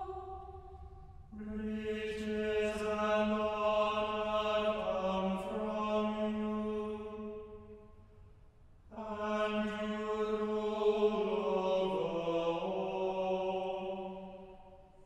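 A small choir of mixed voices singing unaccompanied in harmony, in long phrases of sustained chords that change only occasionally, with short breaths between phrases about a second in and about nine seconds in.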